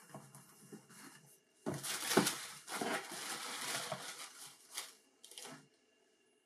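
A cardboard shoebox being opened and a sneaker lifted out: rustling and scraping of the box and its contents with light knocks. It is faint at first, loudest about two seconds in, and ends with a short rustle.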